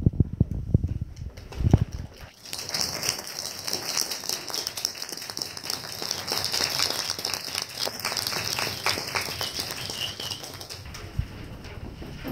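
A few low thumps, then audience applause that starts about two seconds in and dies away near the end.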